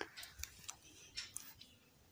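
Near silence broken by a few faint, scattered clicks.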